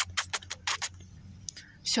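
A handful of short, sharp clicks and taps in quick succession in the first second, then one more a little later.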